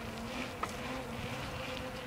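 A steady low buzzing hum, with a fainter overtone above it and a few faint ticks.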